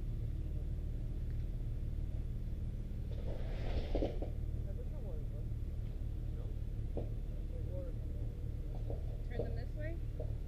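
Nissan Xterra's engine running at a steady low drone as the truck crawls slowly over a rocky creek bed. Faint, indistinct voices come in about a third of the way in and again near the end.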